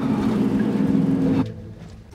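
Minivan engine running as the van drives off, a steady low hum that cuts off suddenly about a second and a half in.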